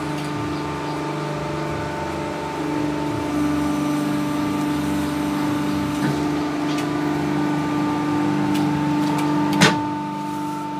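Paper plate making press running: a steady motor hum that gets a little louder about three seconds in, with a few light knocks and one sharp knock near the end as the press works.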